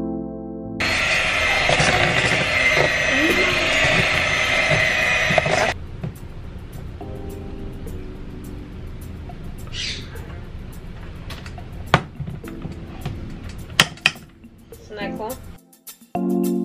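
Electric hand mixer running steadily, its beaters whipping instant chocolate pudding mix and heavy cream in a metal pot, for about five seconds before it cuts off suddenly. Afterwards come a few sharp clicks and the scrape of a spatula against the pot.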